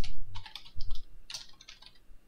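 Typing on a computer keyboard: short runs of key clicks with brief gaps, thinning out near the end.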